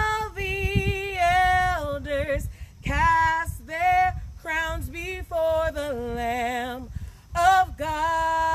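A woman singing a worship song unaccompanied, a string of held, wavering notes that slide between pitches, with short breaths between phrases.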